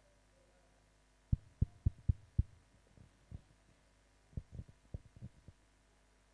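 Microphone handling noise: a quick run of five low thumps and knocks as a handheld microphone is picked up and handled, then a second, softer cluster of thumps near the end.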